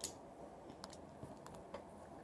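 A few faint, sharp clicks of plastic toy parts being handled in a quiet room.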